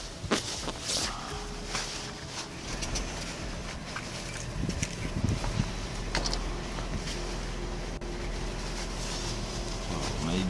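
Body-worn camera rustling and knocking against clothing as the wearer walks, with a few sharp knocks in the first second, over the steady low hum of an idling vehicle.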